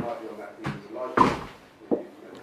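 Speech: a man talking into a lectern microphone in a lecture hall.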